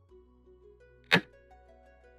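A single sharp clack of a xiangqi piece being placed, the board's move sound effect, about a second in, over soft background music with plucked notes.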